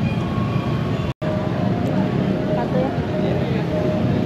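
Busy city street ambience: a steady traffic rumble under a murmur of distant voices, broken by a brief dropout about a second in.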